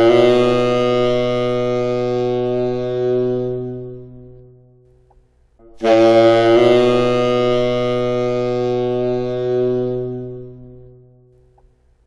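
Tenor saxophone played twice: a short tongued approach note slurs up a half step, written C to C sharp, into a long held note that fades out. This is a half-step-below approach: only the approach note is tongued and the target note is slurred and pushed with breath support.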